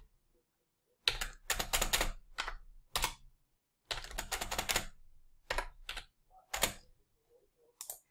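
Typing on a computer keyboard: short runs of keystrokes, a few keys at a time, with brief pauses between the runs.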